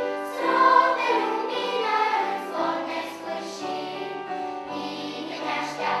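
Children's choir singing a song, the voices moving from note to note throughout.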